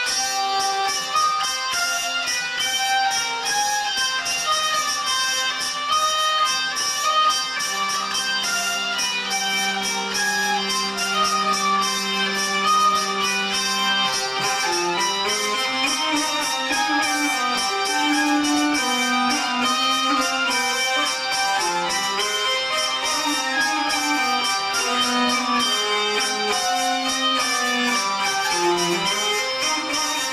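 Two hurdy-gurdies playing a fast traditional tune over steady drones. About halfway through, a long held low note gives way to a moving lower line under the melody.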